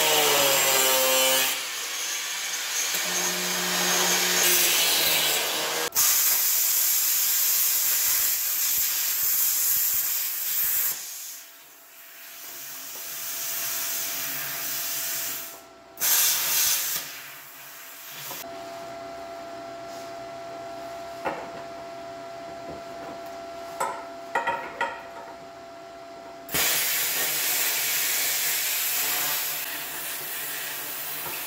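Angle grinder with a cutoff wheel cutting through the steel bars inside a car door, in several long cuts. Between cuts it runs freely, quieter, with a steady tone.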